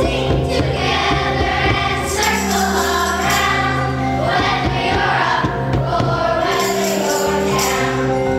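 A children's choir singing a song, accompanied by children playing xylophones and large wooden bass-bar instruments with mallets.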